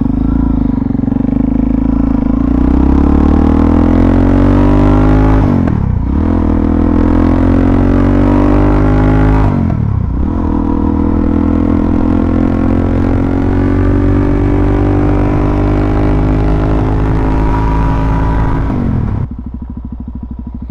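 Suzuki DR-Z400SM's single-cylinder four-stroke engine accelerating hard. Its pitch climbs, drops sharply about six and ten seconds in as it shifts up a gear, and climbs again. It then holds a steady cruise until the throttle is rolled off near the end.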